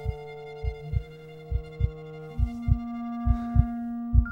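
Film score: held sustained chords that change pitch a little past halfway, over a low heartbeat-like pulse of paired thumps about once a second that builds tension.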